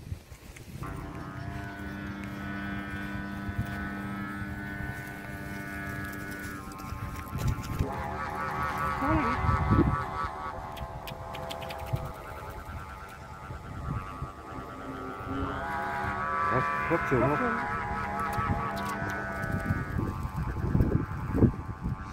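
Kite flutes (sáo diều) on a flying kite, droning in the wind: a steady hum of several pitches at once that starts about a second in and swells louder twice.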